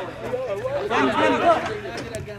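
Chatter of several voices talking over one another, with no other clear sound above it.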